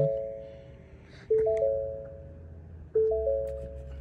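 2018 Ford F-150 instrument-cluster warning chime after key-on, a three-note ding repeating about every one and a half seconds, each strike fading away, over a faint low hum. It sounds with the hood-ajar warning on the cluster.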